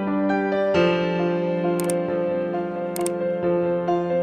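Piano-style keyboard background music with slow sustained notes, crossed by two short sharp clicks a little under two seconds in and about three seconds in.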